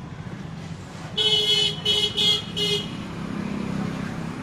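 A vehicle horn honking four times in quick succession, the first toot the longest, over a steady low background hum.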